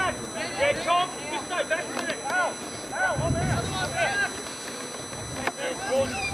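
Several voices shouting and calling across the ground during an Australian rules football match, heard at a distance, with a couple of short sharp knocks.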